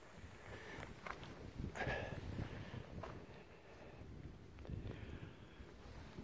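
Quiet outdoor ambience: low wind rumble on the microphone, with a few brief soft rustles about one, two and three seconds in.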